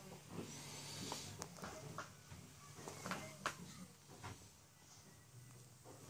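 Quiet room tone inside a ship compartment: a faint steady low hum with a scattered handful of light knocks and clicks.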